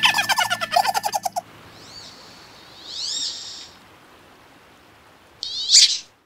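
High-pitched, sped-up cartoon chatter of the animated goldfinches over light music for about the first second and a half. Then a few short rising-and-falling bird chirps over a soft hiss, and a brief loud shrill call near the end.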